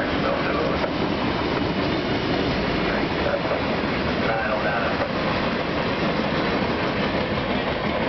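CSX freight train of gondola cars rolling past close by: a steady, loud rolling noise of steel wheels on rail, with a run of light clicks from the wheels.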